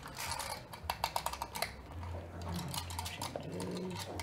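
A quick run of small clicks from a laptop's keys and trackpad as it is worked at. About halfway through, a steady low hum comes in.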